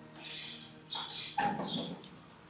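Four or five short, high-pitched animal cries in quick succession, lasting about a second and a half in all.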